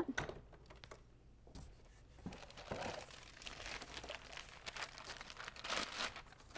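Cardboard box and molded pulp packing insert rustling and scraping as items are handled and lifted out, with a few light knocks. The rustling starts about two seconds in and is loudest near the end.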